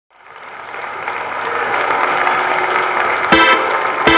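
Opening of a 1980s Georgian pop-rock band track: a dense, noisy wash of sound fades in from silence, then a sharp full-band chord hit comes near the end.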